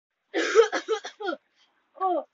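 A person coughing in a quick run of about five coughs, the first the longest, play-acting being sick.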